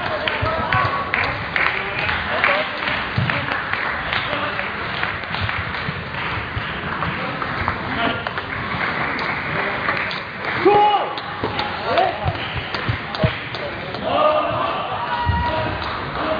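Table tennis ball clicking back and forth between bats and table in quick succession during rallies, with a hum of voices behind it.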